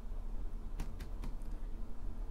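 Low steady room hum, with a few faint, short ticks a little under a second in.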